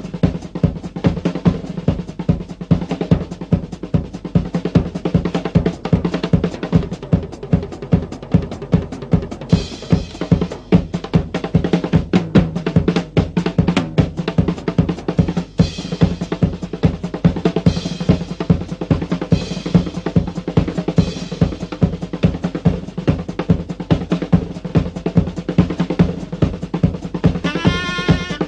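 Live rock drum kit solo: fast, dense playing across snare, toms and cymbals with a driving bass drum, over a steady low held note. The guitar comes back in near the end.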